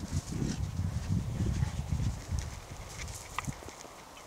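Two Cane Corso dogs galloping through snow, their paws thudding in a quick, uneven rhythm that fades about two and a half seconds in.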